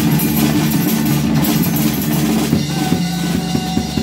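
Live rock music from a drum kit and an acoustic guitar. The drum strokes come through more sharply in the last second or so.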